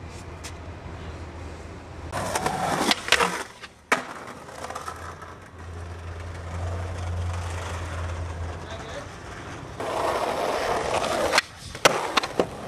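Skateboard sounds: wheels rolling on pavement with sharp board clacks, a couple of them a few seconds in and more near the end as the board is popped. A low hum runs through the middle.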